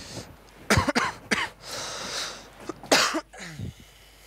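A crying woman's short, breathy coughing sobs: three sharp bursts, each dropping in pitch, with a long hissing sniff or breath between them.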